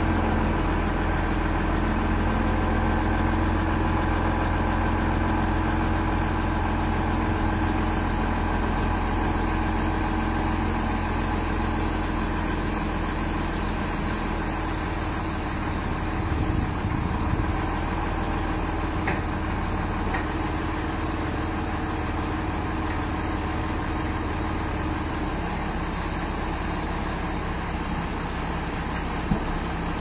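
Valtra tractor's diesel engine running steadily while its hydraulics tip a loaded trailer, with a couple of light knocks along the way.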